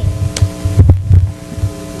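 Low throbbing pulses with a steady hum of several tones, and two short clicks.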